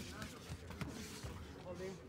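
Faint ringside ambience at an amateur boxing bout: distant voices calling out around the ring, with a faint knock a little under a second in.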